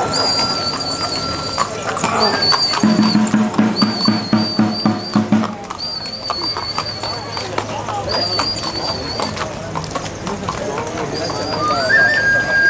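Horse's hooves clip-clopping on a paved street, with crowd voices around it. A high buzz repeats in bursts of about a second throughout, and a low buzzing note sounds for a couple of seconds near the middle.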